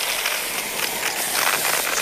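Aerosol spray cheese hissing and sputtering out of the can's nozzle in a steady squirt.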